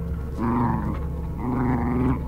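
Two red foxes squabbling, giving harsh, drawn-out open-mouthed calls of about half a second each, two in quick succession.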